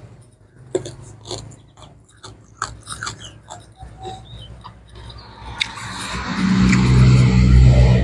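Close-up chewing of crunchy raw vegetables and food, a run of short clicks and crunches. In the last two or three seconds a loud steady noise with a low hum swells up and cuts off suddenly.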